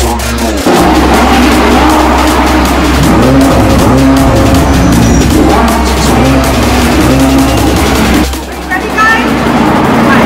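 Sports car engines revving repeatedly over a music track. The sound drops away briefly about eight seconds in, then returns.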